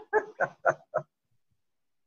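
A man laughing: a quick run of about five short 'ha' pulses, roughly four a second, that stops about a second in.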